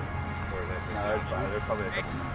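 Distant voices of rugby players calling out on the pitch, over a steady low rumble.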